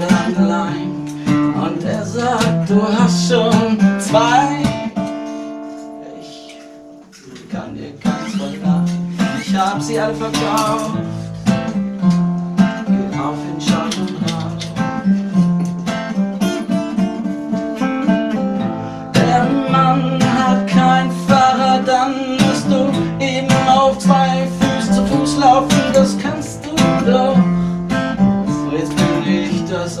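Acoustic guitar being strummed and picked live, a steady run of chords. About five seconds in, one chord is left to ring and fade for a couple of seconds, then the playing picks up again.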